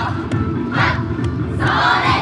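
Loud festival dance music with a group of dancers shouting together over it twice: a short shout just under a second in and a longer one near the end.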